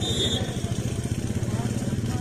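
An engine idling nearby, a steady rapid low pulse.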